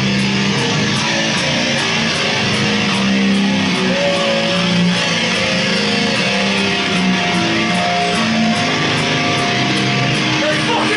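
Live heavy band playing loud: electric guitars, bass guitar and drums, with no vocals in this stretch.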